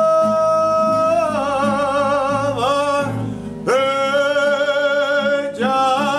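A man singing long held notes with vibrato over a plucked classical guitar. The first held note wavers after about a second and slides down, then after a short break a new note is held from about three and a half seconds, and another phrase begins near the end.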